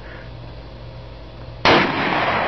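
Low steady hum, then loud gunfire starts suddenly near the end.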